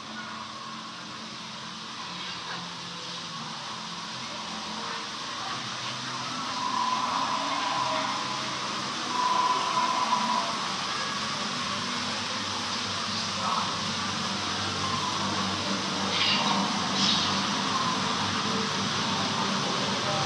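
Steady ambient noise aboard a slow boat on a dark indoor ride river, a hiss with a low hum under it, growing gradually louder over the first several seconds. Faint voices and a few short higher sounds come through over it.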